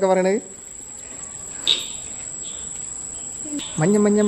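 Steady high-pitched trill of crickets at night, with a person's voice briefly at the start and again near the end.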